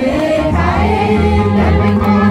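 A man sings a religious hymn through a microphone and loudspeaker, with other voices singing along and steady low notes underneath.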